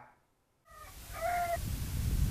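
Outdoor ambience with a steady hiss begins after a moment of silence, and a bird calls briefly about a second in, two short pitched notes.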